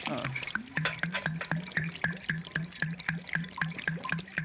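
Sips of carbonated root beer from cans, with the crackle of the soda's fizz close to the microphones, over a regular low pulsing sound about four times a second.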